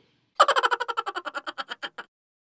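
A comic sound effect: a quick run of short pitched pulses starting about half a second in and fading away over a second and a half.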